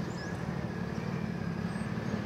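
Steady low background rumble with no words, a continuous hum of unseen machinery or traffic.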